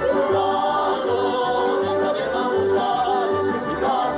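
Slovak folk dance song: a group of voices singing together over a folk band, with the bass keeping a steady beat about twice a second.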